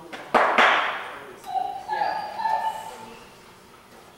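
Two sharp knocks with a short rush of noise, then a dog whining in a few short, high cries.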